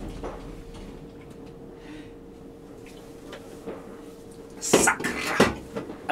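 Steady electrical hum in a tram driver's cab while the tram stands still. Near the end comes a brief loud metallic clatter, two sharp knocks about half a second apart.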